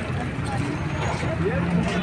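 Bystanders' voices talking over a steady low rumble.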